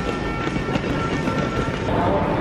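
Wheeled suitcase rattling over brick paving with a dense run of small clicks, along with a thin steady high whine that stops shortly before the end.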